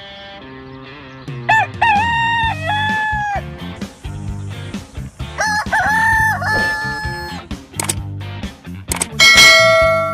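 Rooster crowing twice, each a long cock-a-doodle-doo that rises, holds and falls away, over background music. A loud bright ringing tone sounds near the end.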